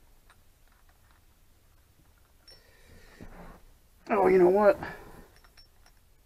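A man's voice makes one short, loud wordless vocal sound about four seconds in, after a few faint clicks from tools being handled.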